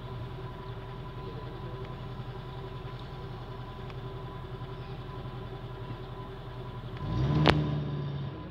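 A vehicle engine idling steadily. About seven seconds in it revs up, with a sharp click.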